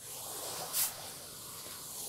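LauraStar micro-steam iron giving off a steady hiss of superheated dry steam as it presses fabric, with a brief louder burst of steam a little under a second in.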